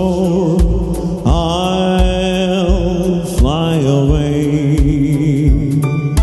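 A man singing a Malayalam Christian worship song into a microphone, holding long wavering notes, over a backing track with a steady low beat.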